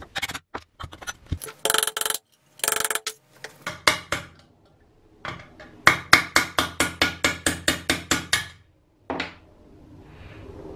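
Light hammer taps on a steel pin punch, driving the hinge pin out of a vintage Wonder Lantern's steel case. A few short clusters of metallic clinks are followed, from about six seconds in, by a run of about a dozen evenly spaced taps at roughly five a second, then one last strike.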